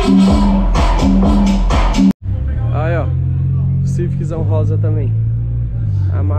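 Electronic dance music with a steady thumping beat and heavy bass. About two seconds in, it cuts abruptly to a different song with long sustained bass notes under a sung vocal line.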